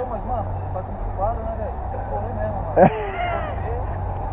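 Indistinct voices talking over a steady low rumble, with one brief louder voice about three seconds in.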